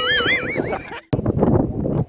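A high, wavering horse whinny lasting under a second, its pitch warbling up and down, then the sound cuts off abruptly.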